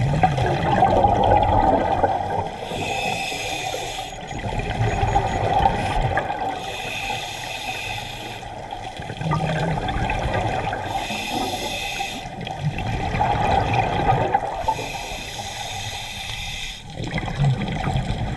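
Scuba diver breathing through a regulator underwater: a hiss of air on each inhale alternates with the bubbling rush of each exhale, about one breath every four seconds.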